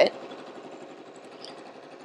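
Juki LB5020 sewing machine running steadily, stitching a seam through two layers of fabric.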